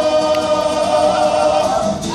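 Māori kapa haka group of women and men singing together with amplified voices, holding one long note and moving to a new note near the end.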